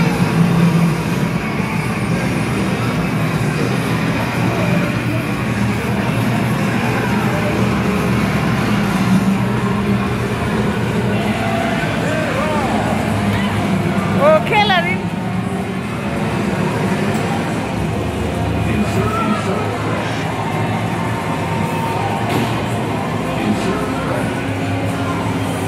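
Busy arcade din: motorcycle-racing game cabinets playing music and engine effects, mixed with background voices. A brief warbling squeal rises above it about halfway through.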